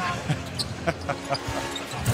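Basketball dribbled on a hardwood court, several separate bounces, over the murmur of an arena crowd.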